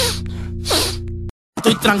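Ending of a rap track: a held bass-and-synth chord with two short vocal ad-libs that slide down in pitch, then the audio cuts to dead silence for a moment just over a second in, and the next rap song starts with rapping over a beat.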